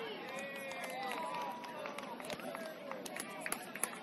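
Voices of soccer players and people on the sideline calling out across the field, too far off to make out. In the second half there are a few sharp knocks.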